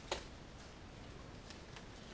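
Disposable exam gloves being pulled onto the hands: one sharp snap just after the start, then a few faint clicks over quiet room tone.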